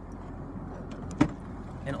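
A single sharp click about a second in, with a few faint ticks before it, over a steady low hum.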